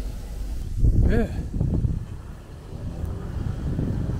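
Wind buffeting the microphone as a low rumble, loudest about a second in, with a brief bit of voice over it.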